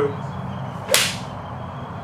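Golf club striking a ball off a hitting mat: one sharp crack about a second in, with a short ring after.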